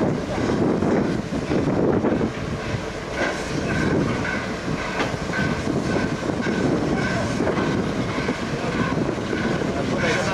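Peppercorn A1 class 4-6-2 steam locomotive 60163 Tornado moving slowly along the rails, a steady low rumble. From about three seconds in, a short high squeak repeats roughly twice a second.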